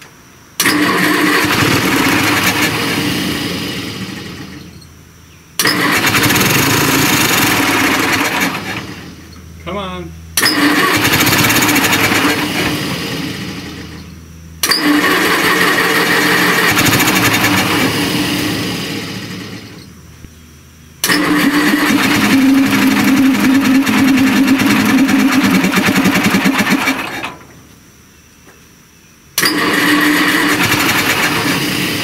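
Small gasoline pony starting engine on a Caterpillar diesel firing up again and again, each run catching suddenly, going a few seconds and fading away, about every five seconds.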